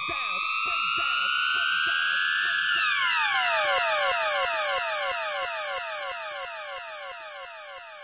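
Synthesizer effects ending an electronic breakbeat track: a pitched synth tone glides slowly upward, then gives way about three seconds in to a run of repeated falling synth sweeps, about two and a half a second, that sound siren-like. The whole passage fades out.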